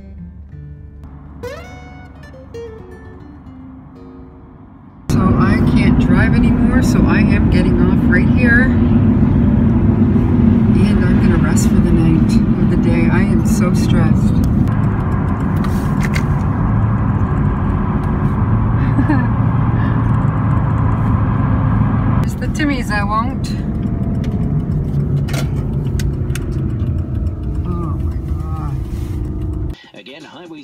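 Acoustic guitar music at first. About five seconds in it gives way abruptly to loud, steady engine and road rumble heard inside a moving van, with faint voice-like sounds over it at times.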